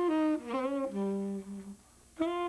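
Tenor saxophone played solo in a small room: a short phrase of held notes that steps down to a low sustained note about a second in, then a brief pause near the end.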